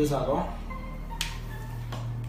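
A man's voice trails off, then a single sharp click a little past a second in, followed by a low steady hum.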